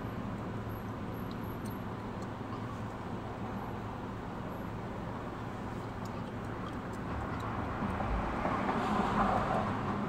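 Car running, heard from inside the cabin: a steady low hum under road and engine noise. The noise swells briefly about eight seconds in, then settles.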